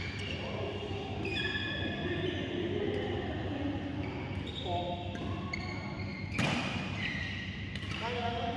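Sports shoes squeaking on a badminton court mat during doubles play: a series of short, high, level squeaks, with a sharp racket-on-shuttle smack about six and a half seconds in, heard in a large hall.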